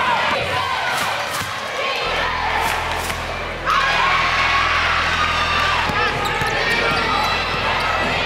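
Live basketball game sound in a gymnasium: a basketball bouncing on the hardwood court under a steady mix of players' and spectators' voices and shouts. The sound gets suddenly louder about three and a half seconds in.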